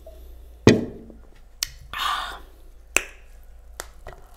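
An aluminium drink can set down on a table: a sharp knock about two-thirds of a second in, the loudest sound, then a couple of lighter clicks about a second and two seconds later, with a short breathy sound between them.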